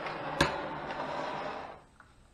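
Handheld gas torch flame hissing steadily over a wet acrylic pour, with a sharp click about half a second in; the hiss cuts off shortly before the end as the torch is shut off.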